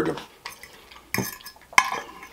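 A metal fork clinking and scraping against a plate while twirling spaghetti. There are a few short clicks, with the sharpest one near the end.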